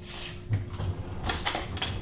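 Handling of a Ninja blender's blade base being picked up off a wooden counter: a light knock about half a second in, then a few quick clicks.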